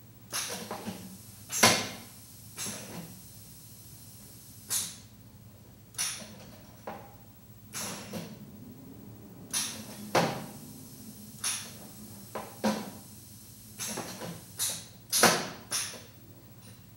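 An irregular series of sharp mechanical clicks and knocks, roughly one a second and uneven in loudness, some ringing briefly, over a low steady hum.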